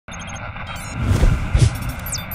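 Sound effects of an animated logo intro: a quick run of short high electronic beeps, then a whoosh and two deep booms.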